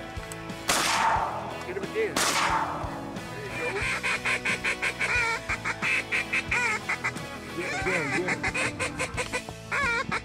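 Rapid runs of duck quacks and chatter, pulsing several times a second with a wavering pitch, begin about three and a half seconds in. Before them come two loud rushing bursts, about a second and a half apart.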